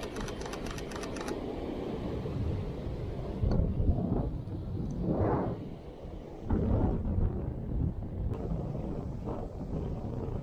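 Wind buffeting an action camera's microphone on an open beach, a low rumble with surf behind it and stronger gusts about three and a half and six and a half seconds in. A quick run of rapid clicks comes in the first second.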